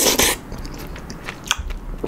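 A spoonful of noodle-soup broth being slurped, cutting off a moment in. Quieter mouth-closed chewing follows, with a few sharp clicks near the end.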